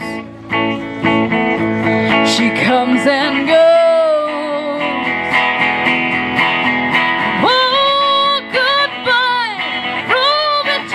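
Semi-hollow electric guitar played through a small amp in a song, with a woman's voice coming in about seven and a half seconds in, singing long notes that bend in pitch.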